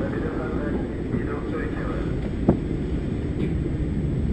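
Low, steady rumble of a Soyuz-2.1a rocket's engines as it climbs away after liftoff, with a single sharp crackle about two and a half seconds in.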